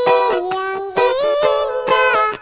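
A pop song sung in a high, pitch-altered, childlike voice, holding long notes with small slides in pitch, over a steadily strummed ukulele.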